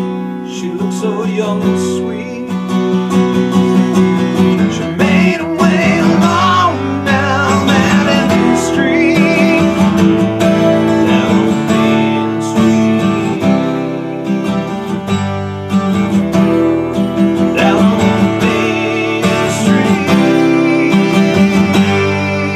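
Acoustic guitar strummed steadily, with a man singing over it.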